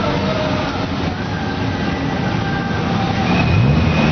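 Vehicle engines running in a street convoy of open-top buggies and motorcycles, over steady road and wind noise. Near the end an engine revs up, its pitch rising.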